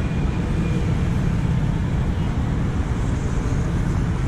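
Steady road traffic noise from cars passing on a busy multi-lane city avenue, an even low rumble with no single event standing out.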